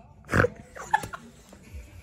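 A woman laughing: one loud, short burst of laughter about half a second in, followed by a few quieter, shorter laughs around a second in.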